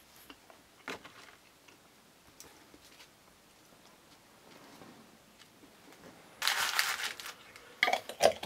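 Eating and handling food at a wooden table: small taps and clicks, then a loud rustling crunch lasting under a second, about six and a half seconds in.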